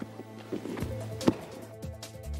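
Background music, with a few thumps of wrestling-boot footfalls on the mat as a wrestler swings his leg and hops on his standing leg; the loudest thump falls just past the middle.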